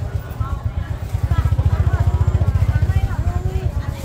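A motorcycle engine running close by, growing louder toward the middle and easing off again near the end, with people talking over it.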